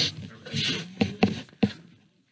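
Handling noise from a camera being picked up and moved: rustling, breathy noise followed by three sharp knocks in the second half.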